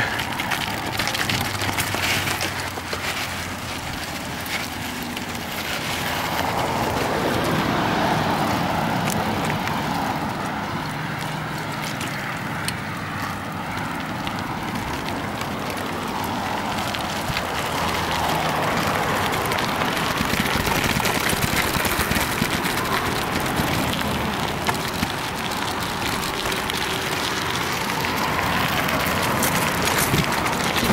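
Mountain bike tyres rolling and crunching over loose gravel and sand, a continuous rough noise that swells and eases as the bike moves along.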